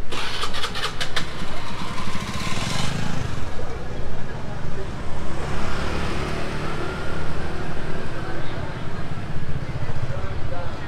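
Motor scooter pulling away close by, its small engine revving up over the first three seconds, with a few sharp clicks in the first second. After that, scooter engines keep running along the street.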